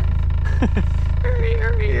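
2019 Toyota Corolla hatchback, fitted with a Remark exhaust, idling with a steady low rumble. Voices, a hum and a laugh, sound over it in the second half.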